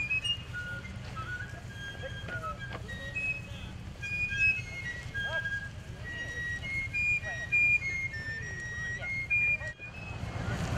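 A fife playing a march tune, a run of high, clear notes, over a low steady rumble. The sound cuts off briefly near the end.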